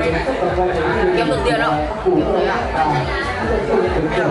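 Indistinct chatter: several people's voices talking at once in a room, with no words standing out clearly.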